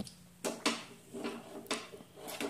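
A few faint clinks and knocks from a glass pan lid being lifted and handled over a metal frying pan.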